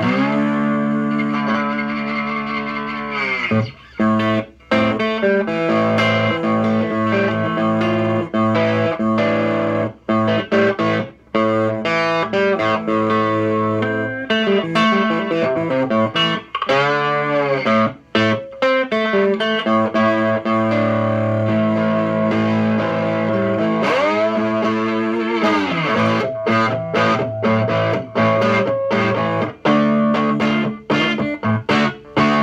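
Three-string cigar box guitar with a humbucker pickup, tuned A-E-A, played amplified with some distortion. A run of blues riffs with several notes that swoop up in pitch and back down, and a few short breaks between phrases.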